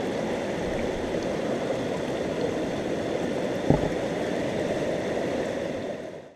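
Steady rush of a stream's running water, with one soft knock a little past halfway; the sound fades down at the end.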